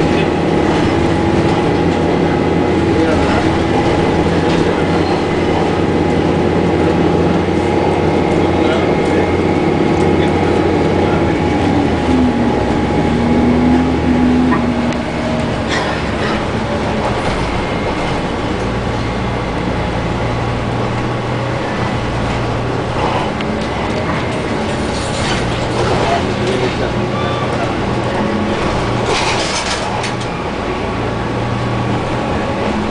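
Cabin sound of an Orion VII Next Generation diesel-electric hybrid transit bus under way: a steady drivetrain hum with several whining tones and road noise. About halfway through, one tone falls in pitch and the sound eases, then a lower steady hum carries on, with a few knocks and rattles near the end.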